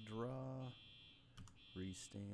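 Faint voice making two short hummed sounds, with a couple of sharp clicks from a computer keyboard or mouse between them.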